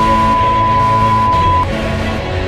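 A steady, high test tone of the kind played under a broadcast 'stand by' card, over background music; the tone cuts off suddenly about one and a half seconds in.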